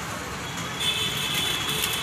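Steady road traffic noise from cars and motorcycles, with a few faint clicks in the second half.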